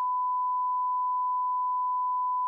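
A broadcast censor bleep: one steady, unbroken beep tone at a single pitch, masking a panellist's speech.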